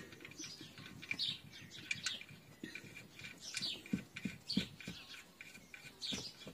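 Faint, scattered chirps of small birds, each a short high note falling in pitch. There are a few soft taps near the middle as the oil drain plug is put back in by hand.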